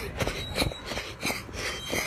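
A person running with a phone in hand: regular footfalls about three a second over rustling and knocking of the phone against hand and clothing.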